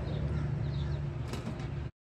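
Faint, short, high peeps of mallard ducklings over a steady low rumble, with one click about a second and a half in; the sound cuts off suddenly just before the end.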